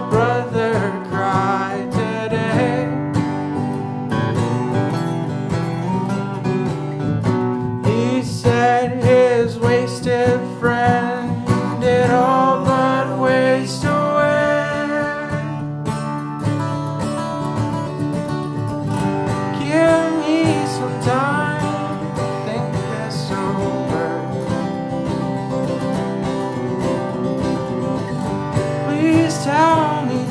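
Acoustic guitars playing an instrumental break in a folk song: a picked lead melody of quick single notes over strummed chords.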